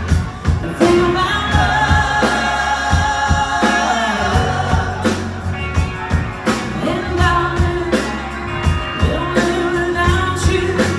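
Live rock band playing: sung lead vocal over electric guitars, bass and drums, with the drums keeping a steady beat.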